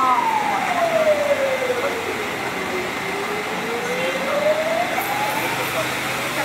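A siren wailing slowly: a single tone falls over about three seconds and then climbs back up. Beneath it runs a steady hiss from the disinfectant spraying.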